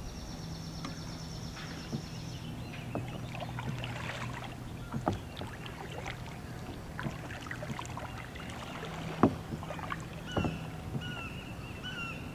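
Sit-on-top plastic kayak on the water: scattered knocks against the hull and light water sounds over a steady low hum, with a few bird calls near the end.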